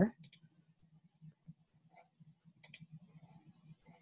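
Faint clicks of a computer mouse, a few just after the start and a couple more about two and a half seconds in, over a low hum.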